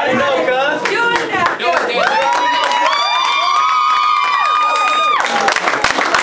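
Live audience cheering: after a moment of voices, several people hold long high "woo" calls from about two seconds in, and these give way to clapping near the end.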